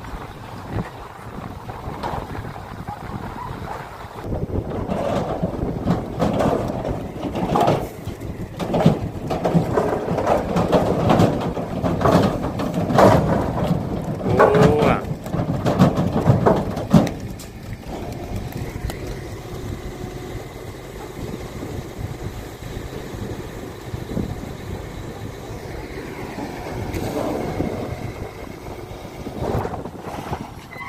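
Heifers scrambling out of a slatted livestock trailer, their hooves clattering and banging on the trailer's metal floor and ramp. There are many knocks in the first half, then it goes quieter after about 17 seconds.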